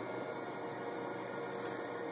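Steady room tone: an even hiss with a faint hum, and no distinct sound event.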